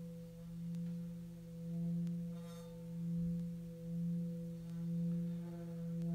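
Tibetan singing bowl sung by rubbing a wooden mallet around its rim: a steady low hum with a couple of higher overtones, swelling and fading about once a second.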